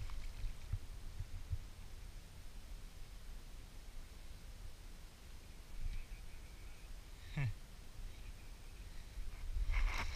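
Quiet riverside ambience: a low steady rumble, with a few faint knocks in the first couple of seconds and a brief falling-pitched sound about seven and a half seconds in.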